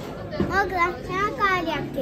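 A young girl's voice, speaking in a high pitch.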